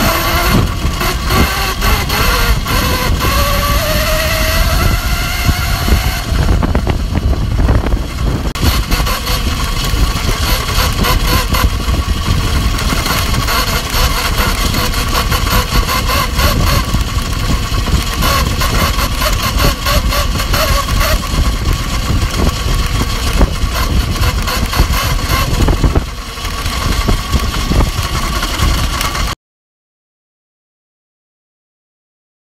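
Electric motor whine, rising in pitch over the first few seconds and then holding steady, over heavy wind rumble. It cuts off suddenly near the end.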